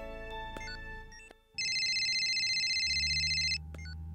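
Soft background music fades out, and after a brief silence a phone's electronic ringtone sounds, one steady high ring lasting about two seconds: an incoming video call. A low steady hum comes in near the end.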